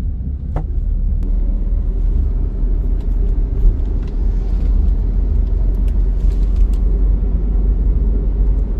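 Steady low rumble of a Hyundai car on the move, heard from inside the cabin: engine and road noise while driving through town.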